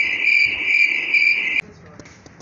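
Crickets chirping as an inserted comic sound effect: a steady, shrill, slightly pulsing trill that cuts off suddenly about one and a half seconds in.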